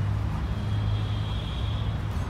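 Steady low rumble of nearby road traffic, with a faint high steady whine through the middle.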